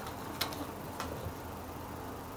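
Two light clicks about half a second apart over a steady background hiss.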